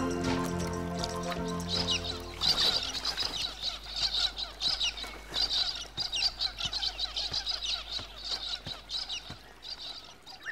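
Background music fades out over the first two or three seconds. From there to the end, a dense run of high bird chirps and twitters, many of them sliding downward in pitch.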